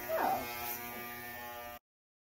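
Corded electric hair clippers buzzing steadily while cutting a boy's hair; the buzz cuts off suddenly near the end.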